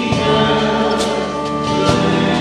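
Live worship band playing a song on drum kit, bass, guitar and keyboard, with held notes and drum strikes about a second in and near the end.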